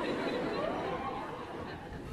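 Lecture audience chattering and laughing, many voices at once, swelling at the start and slowly dying down toward the end.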